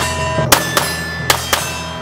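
Compact 9mm striker-fired pistol fired in quick succession, about six sharp shots a quarter to half a second apart, over background guitar music.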